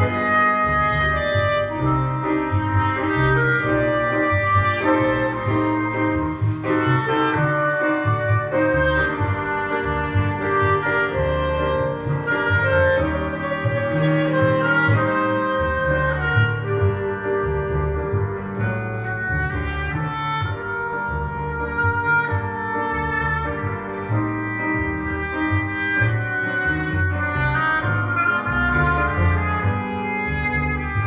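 Live chamber music: an oboe plays the melody over piano and a plucked double bass in a Brazilian samba arrangement.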